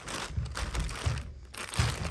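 A thin plastic bag rustling and crinkling as it is pulled out of a fabric bag and opened out by hand, with uneven low knocks from the handling.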